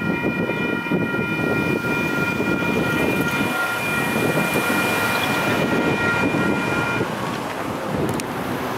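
Railroad crossing's WCH Type 3 electronic bell ringing a steady high chime over a low rumble. The bell cuts off about seven seconds in, a sign that the crossing activation is ending after the train has cleared.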